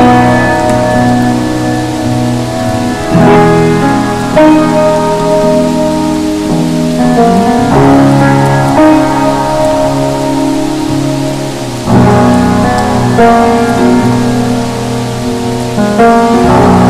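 Slow, relaxing jazz with sustained chords that change every few seconds, layered over a steady hiss of rain.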